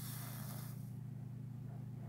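Soldering iron tip meeting acid flux and solder on a slot car's motor-brace joint: a brief hiss in the first second or so. A steady low electrical hum lies under it.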